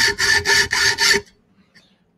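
Hacksaw blade cutting an aluminium block clamped in a bench vice: quick, short back-and-forth strokes, about four a second, with a ringing tone under them, starting a notch. The strokes stop about a second in.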